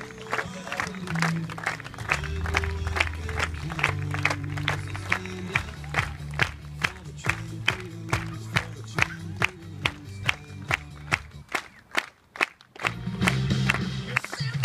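A crowd clapping in a steady rhythm, about three claps a second, over music with steady bass notes. The clapping and music break off briefly about twelve seconds in, then the music returns louder.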